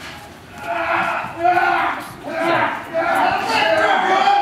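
A man's long, drawn-out cries in several bouts, starting about half a second in and running on through the rest.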